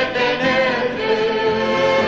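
A choir sings a liturgical refrain, its voices holding long, steady notes.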